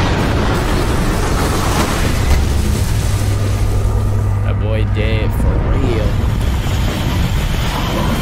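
Loud, steady rumbling noise from an animated action episode's soundtrack, with a deep hum through the middle and a short wavering voice-like cry about five seconds in.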